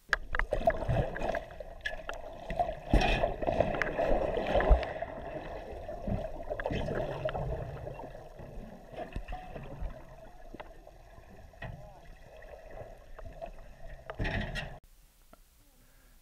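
Muffled underwater sound from a camera beside a shark biting at a baited line: a rushing, bubbling water noise with several dull knocks in the first few seconds. It stops abruptly near the end.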